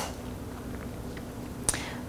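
Quiet room tone with one short, sharp click a little before the end.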